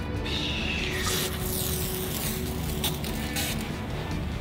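High-pressure washer wand spraying water onto concrete: a hiss that comes in just after the start and wavers as the spray moves, under background music.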